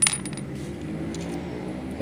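Small metal parts of a sewing machine's upper thread tension assembly clinking as they are taken off one by one: one sharp metallic clink with a brief high ring at the start, then quiet handling.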